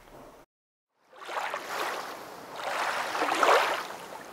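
A short drop to silence, then the wash of ocean waves, rising and falling in two swells, the second louder.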